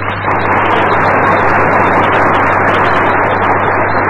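Audience applauding: a dense, steady clatter of many hands, starting right after the speaker closes his answer. It is muffled, with nothing above about 3 kHz, over a steady low hum.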